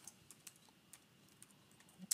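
Faint computer keyboard keystrokes: a handful of separate key clicks as a word is typed.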